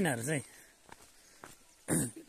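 Footsteps on a dirt footpath: a few faint steps, then a louder short scuff near the end. A man's voice trails off at the start.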